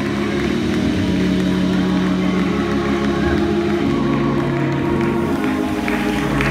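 Live gospel band music: slow, long held chords whose low notes change every couple of seconds.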